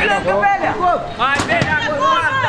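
Several young voices shouting and calling out at once during a small-sided football game, with one sharp knock about a second and a half in.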